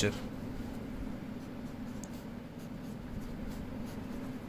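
Ballpoint pen writing on ruled notebook paper: faint, short scratching strokes of the pen tip.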